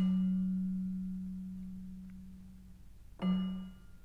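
A single low, pitched note is struck with a bright attack and rings on, slowly dying away over about three seconds. A second, shorter note of the same pitch is struck about three seconds in and dies away quickly.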